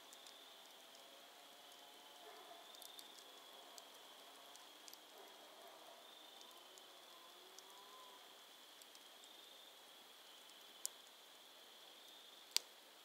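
Faint crackling of campfire embers: small scattered wood pops, with one sharper pop about eleven seconds in. A steady high-pitched chorus of night insects runs behind it.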